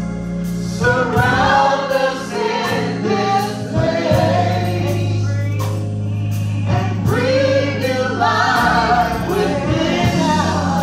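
Live gospel singing by a small group of singers on microphones, with long held low notes underneath.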